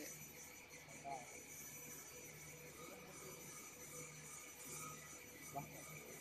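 Faint steady machine hum with a few thin steady tones, and brief faint voice-like sounds about a second in and near the end.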